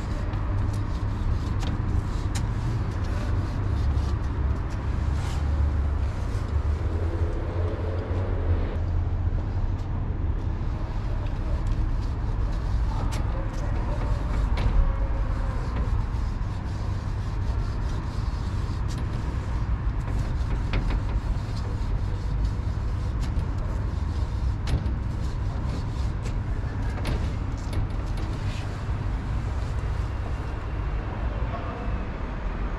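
Steady street noise of passing road traffic, dominated by a continuous low rumble, with faint scattered clicks.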